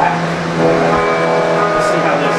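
A man singing live to his own hollow-body electric guitar. From about half a second in, a long note is held steady.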